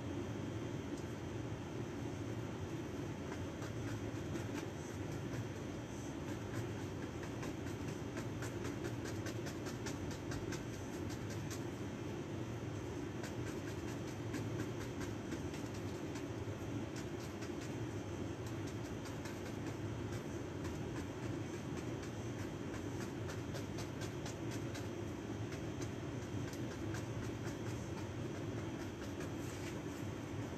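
An oil-paint brush tapping and stroking on a stretched canvas, a run of many quick, light ticks, over a steady low room hum.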